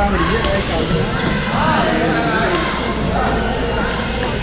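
Badminton rackets striking shuttlecocks on several courts at once: sharp, irregular clicks, several a second at times, over the overlapping chatter of many players in a large echoing gym.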